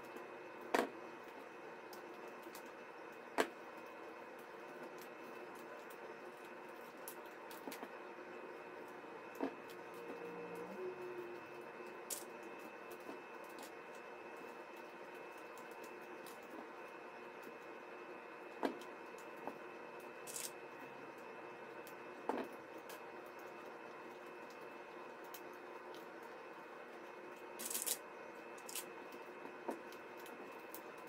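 Quiet handling of a woven magazine-paper basket as its top strips are folded down, with a handful of sharp small clicks and taps as plastic craft clips are put on, over a faint steady background hum.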